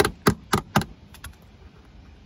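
Claw hammer tapping a bolt head down onto a steel post-anchor bracket, metal on metal: four quick strikes about three a second, then a couple of faint clicks. The bolt is being seated into a hole filled with chemical anchor resin.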